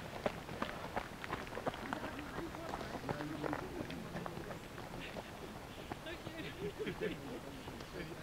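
Running footsteps on a gravel path, about three steps a second, close at first and fading as the runner moves away, with indistinct voices in the background.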